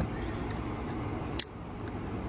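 Steady low outdoor background noise with one sharp click a little past the middle.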